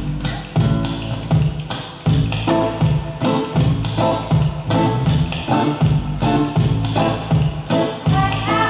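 Live band music with a steady beat, bass and electric guitar, instrumental, with no singing.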